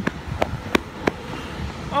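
Quick footfalls of a person running across a road: a few sharp steps about three a second, stopping just after a second in, over a low rumble of traffic.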